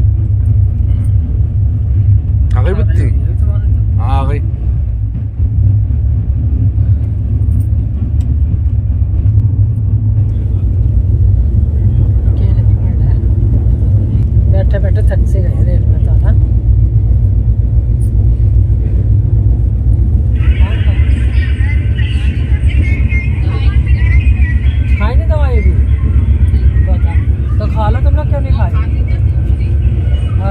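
Passenger train running, heard from inside an Indian Railways coach: a loud, steady low rumble throughout. Faint voices come and go, and a higher hiss joins about two-thirds of the way in.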